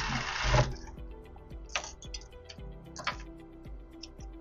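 Industrial sewing machine stitching a crochet blanket onto a T-shirt, heard faintly as light ticking under steady background music. It opens with a short rush of noise.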